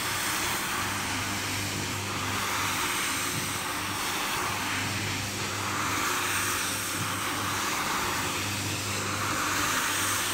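Single-disc rotary floor scrubber running on a wet, soapy rug: a steady motor hum under a swishing wash of the brush working water and foam through the pile, the swish swelling and fading every few seconds as the machine is swept back and forth.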